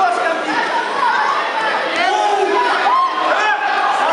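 Spectators shouting and talking over one another in a large sports hall, many voices at once, calling out to the fighters.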